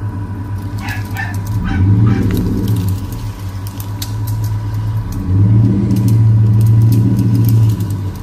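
Pickup truck engine running under load as it drags a log on a chain, its low exhaust drone swelling twice as the driver gives it more throttle, the longer pull near the end being the loudest. A dog barks a few times about a second in.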